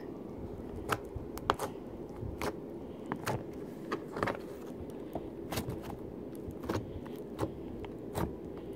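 Hands squeezing, poking and pinching a lump of glitter slime, making irregular small clicks and pops, roughly two or three a second, over a steady low background hum.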